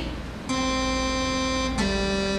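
Synth lead voice on a Roland organ: a buzzy held note that starts about half a second in, then steps down to a lower note near the end.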